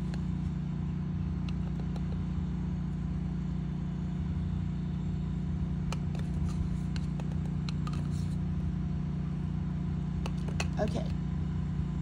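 A steady low hum with a rumble beneath it, like a motor running, throughout. A few faint clicks about six seconds in and again near the end, from a metal teaspoon scooping ground coffee out of a tin.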